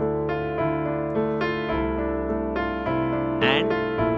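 Piano playing a slow minor-key movie-theme motif over the Andalusian cadence: melody notes struck one after another above a held bass, with the bass stepping down to a new chord a little under two seconds in.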